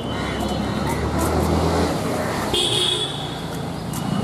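Urban traffic noise with a low engine hum in the first two seconds and a short vehicle horn toot about two and a half seconds in.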